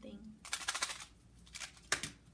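Handling noise as gift-box items are moved: a short, dense rattling rustle about half a second in, then a couple of small clicks and a sharp tap near the end.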